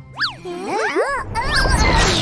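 A quick cartoon sound effect whose pitch sweeps up and straight back down near the start. It is followed by a cartoon character's wordless, wavering gibberish voice over light background music.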